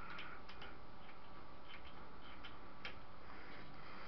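Faint, irregularly spaced small clicks and ticks over steady low room noise.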